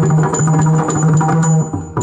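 Yakshagana percussion accompaniment: drums beating a fast, even rhythm with a high, steady ringing note that pulses on the beat.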